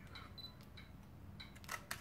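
Olympus OM-D E-M10 Mark II mirrorless camera taking a shot with its pop-up flash set to fill-in and red-eye reduction: a few faint ticks, then the shutter clicking near the end.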